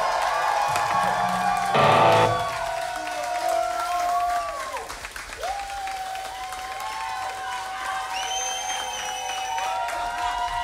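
Electric guitars ringing out at the end of a live rock song, with long held feedback tones that bend up and down in pitch and one loud chord struck about two seconds in.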